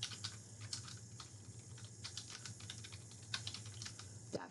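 Typing on a computer keyboard: a run of quick, irregular key clicks, faint, over a low steady hum.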